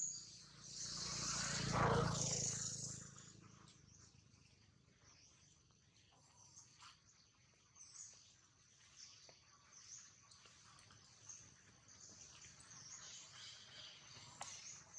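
Faint outdoor ambience with soft high-pitched chirps about once a second over a thin steady hiss. A broad rushing swell rises and fades within the first few seconds and is the loudest sound.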